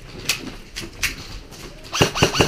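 A few sharp snaps of airsoft gunfire, three or four in the first second.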